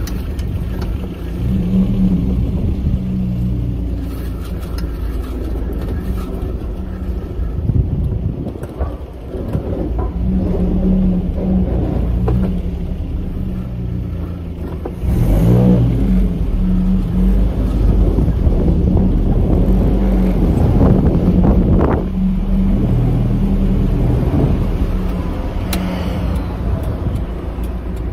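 Datsun 720's Z18 four-cylinder engine running on a newly fitted MSD 6A ignition box, heard from inside the cab, its pitch rising and falling as it is revved, and growing louder about halfway through.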